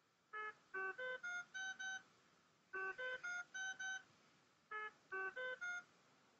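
A short tune of electronic beeps at changing pitches, played in three quick phrases, like a phone ringtone.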